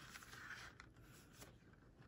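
Near silence, with a few faint rustles of paper being handled.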